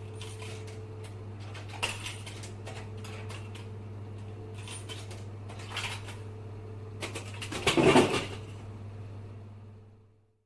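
A steady low hum under scattered small knocks, clicks and scrapes, with a louder rattling, rustling burst about eight seconds in. It fades out at the end.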